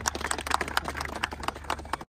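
A small group of people clapping by hand, many uneven overlapping claps.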